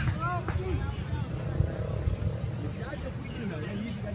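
Wind buffeting the microphone as a low, uneven rumble, with faint distant voices calling across an open field.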